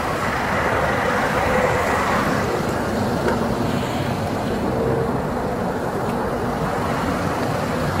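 Steady hum of vehicle and traffic noise, an even rumble with no distinct events.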